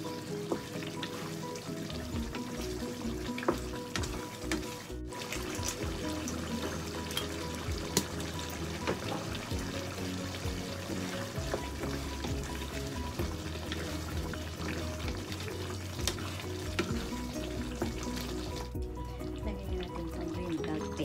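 Background music over a tomato-sauce stew of chicken, potato and carrot simmering in a frying pan, with a wooden spatula stirring it and now and then knocking against the pan.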